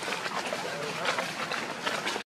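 Indistinct voices over a steady outdoor background noise.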